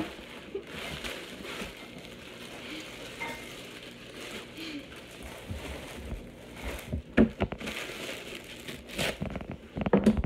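Plastic bread bag crinkling and rustling as it is handled, with a few sharp knocks near the end.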